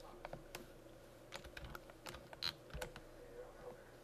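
Scattered light clicks of a computer keyboard and mouse, irregular and a few to the second, the loudest about two and a half seconds in, over a faint steady hum.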